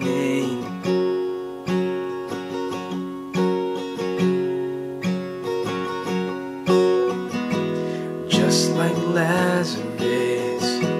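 Acoustic guitar with a capo strummed in a steady rhythm, changing chords from G to D to Cadd9. A man's voice sings along briefly at the start and again near the end.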